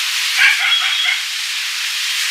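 A steady hiss with a few faint short chirps, one a brief thin whistle-like tone, about half a second to a second in.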